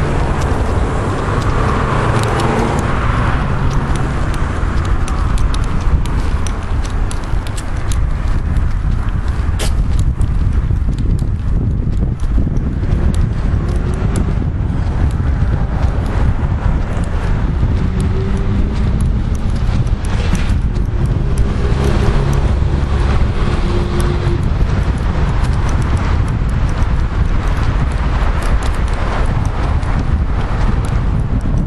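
Footsteps of someone walking on pavement, with a heavy low rumble and clicks from a handheld camera stabiliser being carried along by its top bar.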